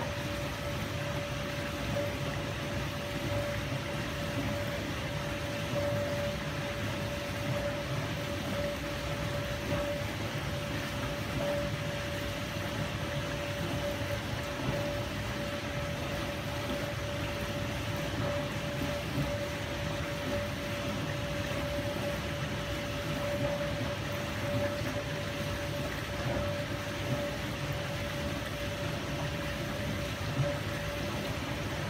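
Miele G 560 dishwasher running its pre-wash: a steady hum from the wash pump over an even rush of circulating water.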